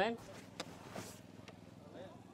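A spoken "amén" ending at the very start, then faint outdoor background noise with a soft high hiss in the first second and a couple of light clicks.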